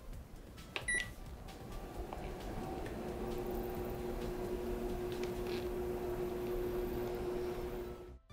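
Induction cooktop being switched on: a short beep about a second in, then a steady electrical hum with a few fixed tones that builds up over the next two seconds as the cooktop starts heating and holds steady.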